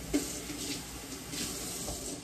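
Kitchen faucet running into the sink in uneven surges as a hollowed-out green bell pepper is rinsed under it.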